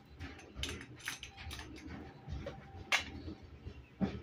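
Scattered light clicks and knocks at irregular intervals, with one sharper, louder knock about three seconds in.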